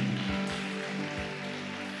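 Soft background worship music: a keyboard holding steady sustained chords, with a couple of short low bass notes.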